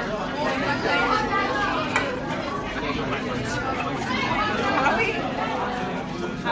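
Background chatter of several voices talking at once, no words clear, with a short click about two seconds in.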